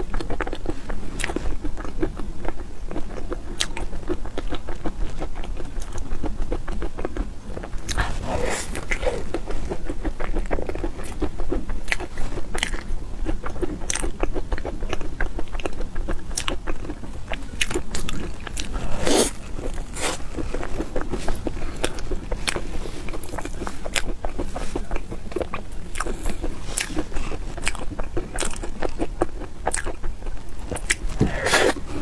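Close-miked chewing and biting of a chocolate hazelnut crepe cake, with many small crunches and crackles from the hazelnuts and chocolate, a few louder crunches among them.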